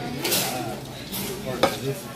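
Noodles being slurped from a bowl in two short hissing slurps, with a sharp clink of a utensil on dishware about a second and a half in, over faint restaurant chatter.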